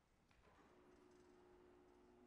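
Near silence: room tone, with a faint steady tone coming in just under a second in.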